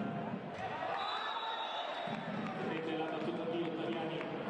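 Volleyball rally in an indoor sports hall: the ball is struck on a jump serve about half a second in, over continuous crowd shouting and voices. A high steady whistle-like tone sounds from about a second in for over a second.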